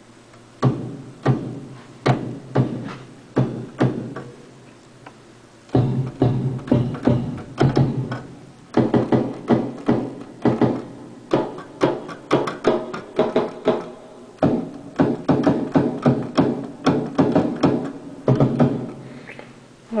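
Kick drum sample played from an Ensoniq EPS 16 Plus sampling keyboard: a series of short, punchy hits, at first about two a second, then after a short pause in faster, denser runs.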